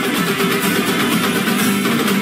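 Loud, steady music with a guitar part.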